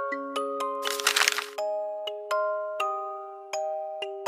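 Music-box melody of slow plucked notes, each ringing and fading. About a second in, a short crackling rustle lasts about half a second over the music.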